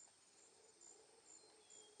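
Near silence, with a faint cricket chirping about twice a second.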